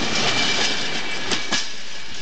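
Freight wagons rolling past at close range: a steady rumble of steel wheels on the rails, broken by a few sharp clicks.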